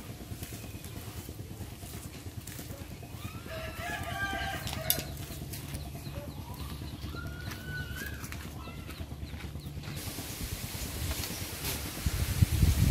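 Rooster crowing twice, about four and about seven seconds in, over a low steady hum, with one sharp knock about five seconds in.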